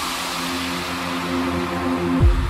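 Electro house dance music in a breakdown: a held synth chord over a hissing noise wash, with no drum beat. The beat comes back just after.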